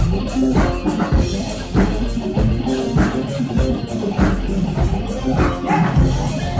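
Live rock band playing loud: electric guitars and keyboard over drums keeping a steady beat of about two hits a second.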